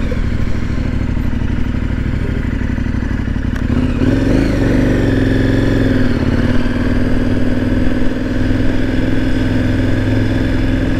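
KTM 1090 Adventure R's V-twin engine idling at a stop, then revving up as the bike pulls away about four seconds in, and settling into a steady note at low road speed.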